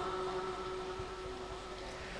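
The tail of a held, chanted vocal note fading steadily away, leaving a faint hiss.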